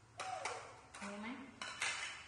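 Plastic plates clattering as they are lifted off a stack and set down on a tiled floor: a run of sharp knocks, about five in two seconds, loudest near the end.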